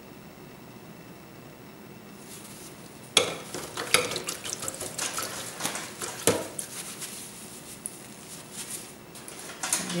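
A paintbrush being cleaned out in a brush-cleaning jar: from about three seconds in, a run of sharp clinks and taps against the jar with swishing in between.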